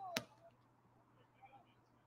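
Faint open-air ballpark ambience with faint distant voices, and one sharp click about a fifth of a second in.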